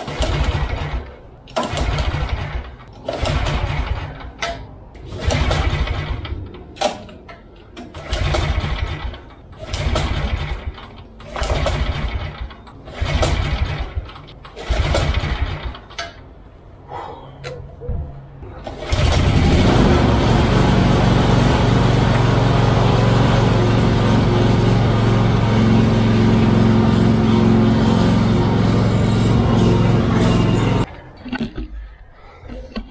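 Recoil pull-starts on a 48-inch Encore walk-behind mower engine long out of use: about a dozen pulls, each a second of cranking that fails to fire, because a jerry-rigged wire had come undone. About nineteen seconds in the engine catches and runs steadily, burning oil in its exhaust, which the mechanic took as a classic sign of too much oil in the engine.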